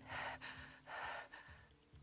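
A young woman's frightened gasping breaths as she hides: two hard breaths, one at the start and one about a second in, then a fainter third.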